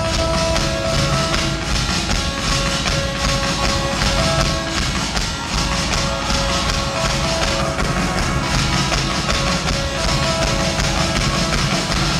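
Live pop band playing loudly: a drum kit hit hard with a repeating keyboard riff on top.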